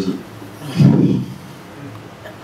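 A man's short spoken question ("is it?") into a handheld microphone about a second in, over a low steady hum, then only room noise.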